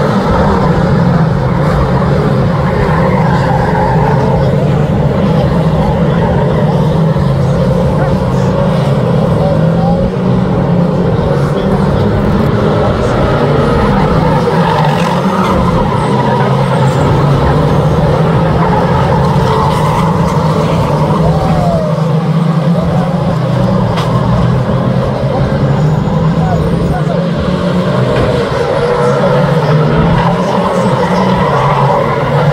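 2-litre National Saloon stock cars racing, several engines running at once, with the revs rising and falling as the cars lap.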